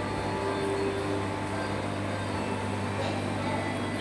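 Steady low mechanical hum of an aquarium hall's pumps and ventilation, with a faint held tone for about a second near the start.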